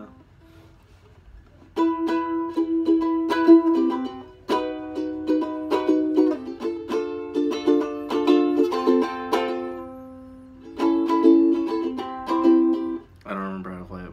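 Ukulele strummed in chords, starting about two seconds in after a brief quiet, with the chords left ringing for a moment near ten seconds before the strumming resumes.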